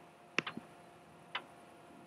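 A few sharp clicks from a hand handling the recording device: a quick cluster of three about half a second in, then one more about a second later.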